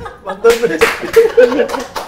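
A small group laughing, with a few sharp hand slaps or claps in the first half of the laughter.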